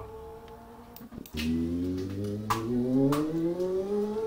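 Motorcycle engine coming in loud about a second in and rising steadily in pitch as it accelerates, with two sharp clicks along the way.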